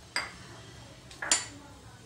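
Steel kitchen bowls and utensils clinking: two sharp metallic clinks about a second apart, the second louder with a brief ring.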